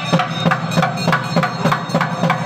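Traditional temple procession music dominated by fast, even drum strokes, about five a second.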